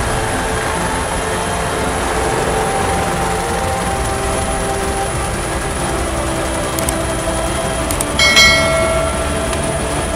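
Steady rumble of a military helicopter's engine and rotor heard from the open door-gunner position. About eight seconds in, a brief louder sound with several tones rises above it.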